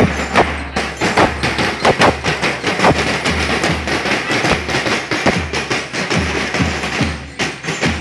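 Parade band music led by drums: many sharp drum strikes over a steady, deep bass-drum beat.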